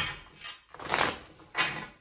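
A tarot deck being shuffled by hand: four papery swishes about half a second apart as packets of cards slide against each other, the first one a sharp slap.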